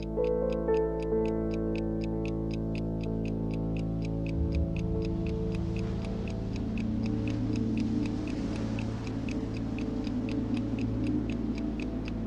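A pocket watch ticking steadily, about four ticks a second, over sustained low droning music; a low pulsing note joins about four seconds in.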